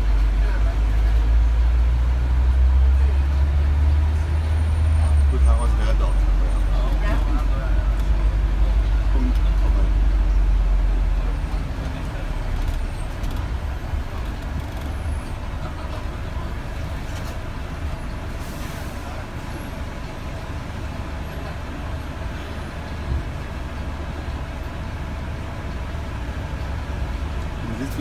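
Low engine and road rumble of a London double-decker bus, heard from inside on the upper deck. It is loud for about the first eleven seconds, then drops to a quieter, steady rumble.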